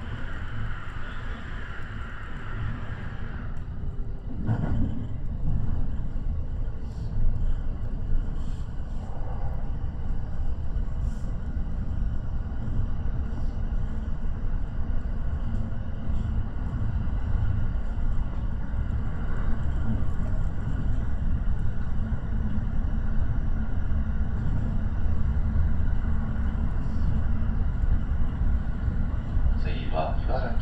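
Electric commuter train running along the line, heard from inside the front car: a steady low rumble of wheels on rails, with a higher hum that cuts off about three seconds in.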